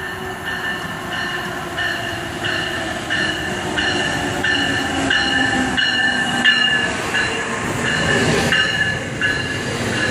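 Amtrak ACS-64 electric locomotive pulling into a station and passing close, its bell striking about every two-thirds of a second and a motor whine falling in pitch as it slows. Near the end the rolling rumble of the passenger coaches going by grows louder.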